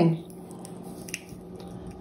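Fresh pea pod being split open by a small child's fingers: faint squishing and a small crisp snap about a second in.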